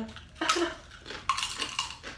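Crunching of Doritos Sweet Chili Heat tortilla chips being bitten and chewed: sharp crunches about half a second in, then a run of them through the second half.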